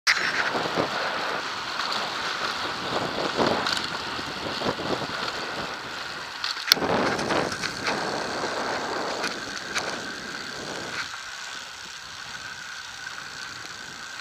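Road bike rolling along a paved road, heard from an action camera on a moving bike: a steady rush of wind and tyre noise with scattered small rattles and clicks, and one sharp click about seven seconds in.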